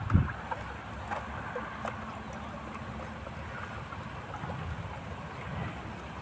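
Sugar and water being stirred with a wooden stick in a plastic bucket, a low swishing slosh with faint scattered knocks and one low thump right at the start, under wind rumble on the microphone.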